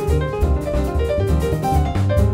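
Jazz piano trio playing: upright piano with a line of notes over plucked double bass and a drum kit keeping time on the cymbals.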